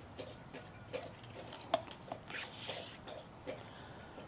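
Irregular light clicks and taps, about two or three a second with one sharper click a little before the middle, and a short breathy hiss a little past halfway.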